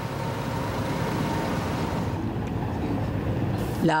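Steady outdoor rumble of military jeep engines running at slow motorcade pace, with general street noise.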